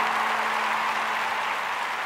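A steady hiss of noise, slowly fading.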